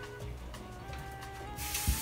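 Quiet background music with a few held notes; about a second and a half in, a steady hiss starts up: a bathroom sink tap running.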